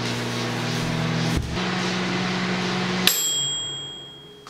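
Microwave oven running with a steady hum and fan noise. About three seconds in, its mechanical dial timer runs out: the oven cuts off with a click and its bell dings once, ringing out as the hum stops.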